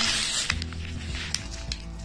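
Background music with a steady beat, with a brief hissing rustle in the first half second.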